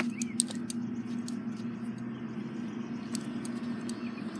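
A steady low hum at one constant pitch, with scattered light ticks and a brief high chirp near the start.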